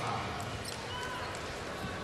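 Basketball game court sound under steady arena crowd noise: a basketball bouncing on the hardwood, with a few short sneaker squeaks.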